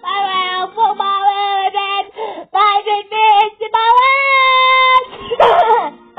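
A child singing in high, held notes with short breaks between phrases. One long note rises and holds before a brief noisy outburst near the end.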